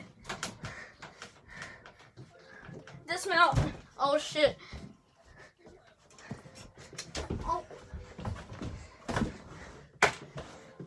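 Irregular knocks and thumps of a child's feet and hands hitting the floor, furniture and wall as he runs and climbs an improvised indoor obstacle course, heaviest near the end as he scrambles up the wall. A child's voice calls out briefly about three seconds in.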